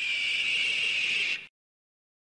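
A single raspy, high screech like a bird's call, dipping slightly in pitch and then held, which cuts off abruptly about one and a half seconds in.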